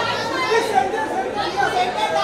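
Many voices chattering at once in a large room: a crowd of photographers calling out to a posing subject.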